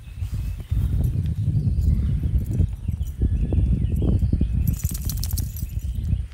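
Low, uneven rumbling noise on the microphone, with a short rattle of sharp clicks about five seconds in.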